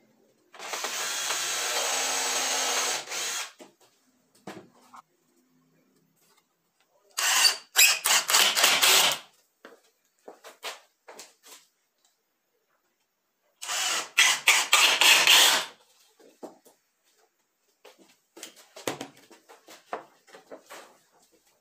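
Cordless drill-driver run three times, about two to three seconds each, working into the edge of a melamine-faced chipboard frame, with light knocks of handling between runs.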